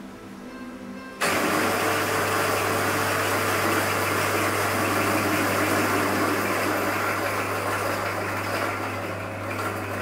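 Electric coffee grinder switched on about a second in, its motor running steadily with a low hum under the noise of beans being ground into a portafilter.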